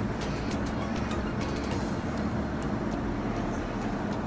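Steady low rumble of background noise, like distant traffic or machinery, with a few faint light clicks.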